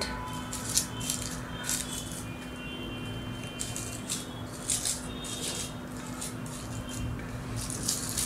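Faint, irregular rustling and soft scraping of hands pressing paper flowers onto a board and squeezing a plastic glue bottle, over a low steady hum.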